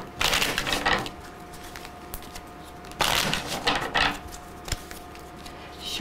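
A deck of tarot cards being shuffled by hand, in two bursts of rapid card clatter about a second long each: one at the start and one about three seconds in.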